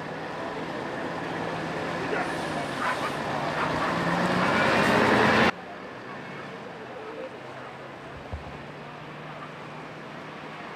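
Mercedes-Benz coach engine running as the bus pulls away, growing steadily louder, with voices around it. About halfway through it cuts off suddenly to a quieter, steady city street traffic hum.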